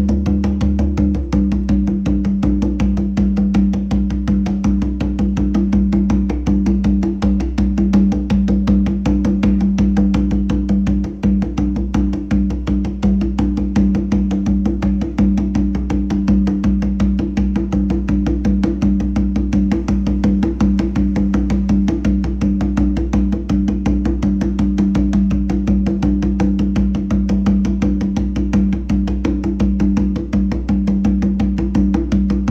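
Hand drum played with open-tone strokes: a fast, even, unbroken run of palm strokes, each ringing at the same pitch, as a basic open-technique drill.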